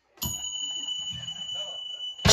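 A steady, high-pitched electronic tone from the band's sound system, bell- or alarm-like, comes in just after the start and is held for nearly two seconds before cutting off, with low murmuring underneath.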